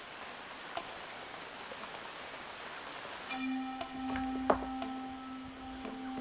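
Forest ambience with a steady high insect chirring. About halfway through, a held low musical drone note comes in and sustains, with a few scattered faint clicks.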